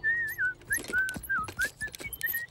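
Someone whistling a short, wavering tune of several notes, with a few soft taps alongside.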